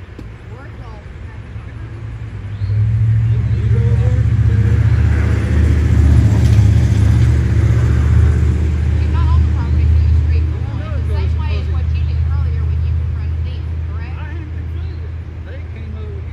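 A motor vehicle's engine rumbling close by. It grows suddenly louder about three seconds in, is loudest around the middle and fades toward the end, with faint voices under it.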